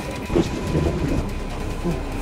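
Low, rumbling background noise of a busy airport terminal hall, with faint indistinct voices.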